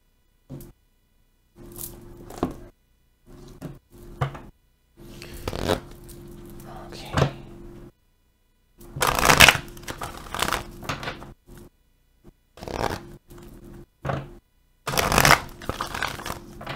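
An oracle card deck being shuffled by hand: irregular bursts of rustling and slapping card noise that start and stop, the loudest about nine seconds in and again near the end.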